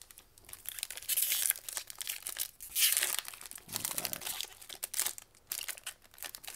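Foil wrapper of a Magic: The Gathering booster pack crinkling and crackling as it is torn open and handled, with louder bursts about a second in and around three seconds in.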